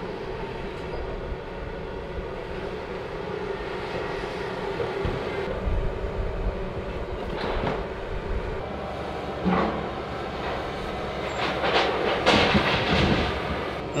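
John Deere 160G excavator's diesel engine running steadily with a hydraulic whine as its bucket pulls at a cinder-block wall. A few knocks come in the middle, and near the end the concrete-block cap of the wall breaks apart and clatters down.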